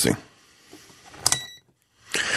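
A click and a short, high electronic beep, about a second in, from an Aneng AN8008 digital multimeter as a button is pressed to switch its reading from voltage to frequency.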